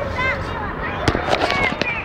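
Young children's high-pitched voices calling out, with a quick cluster of sharp knocks about a second in.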